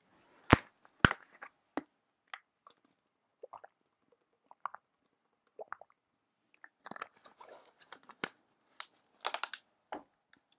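A clear plastic water bottle being handled, opened and drunk from: two sharp clicks about half a second and one second in, then scattered small plastic crackles and clicks, with a denser flurry near the end.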